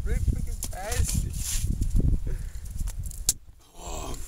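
A snowball hits the camera about three seconds in: one sharp smack, after which the sound goes muffled and low for a moment. Before it, young men's voices are heard over wind rumble on the microphone.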